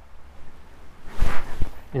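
A brief rustling whoosh with a couple of low thumps about a second in: the angler's own footsteps and clothing movement picked up by a body-worn camera as he steps along the bank.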